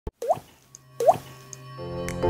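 Two water-drop plops, each a short rising bloop, about a quarter second and a second in. Soft music swells in near the end.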